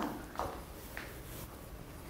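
Faint rustle of a cotton happi coat as it is pulled on over a child's arms, with a couple of soft brushes of cloth over quiet room tone.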